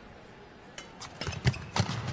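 Badminton rally: a quick series of sharp racket hits on the shuttlecock and footfalls on the court, starting just under a second in. The loudest hit comes about halfway through.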